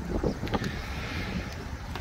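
Wind noise on the microphone: a low, steady rumble with a light hiss above it.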